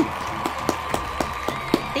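A person clapping hands in a quick, even run of about nine claps, roughly five a second.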